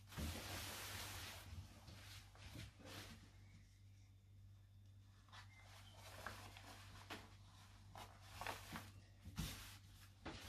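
Cotton fabric rustling as hands smooth and shift it on a table. It is loudest for the first couple of seconds, then comes back as a few short, soft brushing and handling noises later on.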